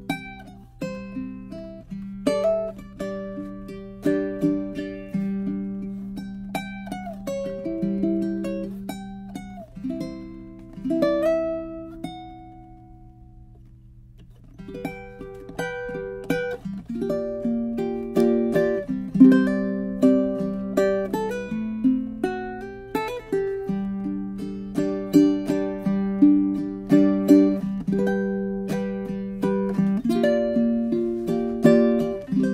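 Kala ukulele played solo, a fingerpicked melody over chords. A little before halfway the playing stops and a last note fades out; then it resumes fuller and louder.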